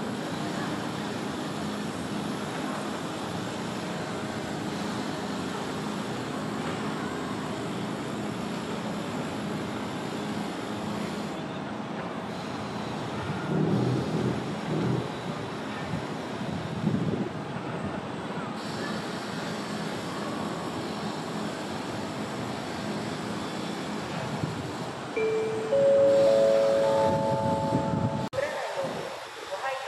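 Steady background noise of an indoor ape enclosure with a low murmur. Near the end, a rising four-note chime sounds.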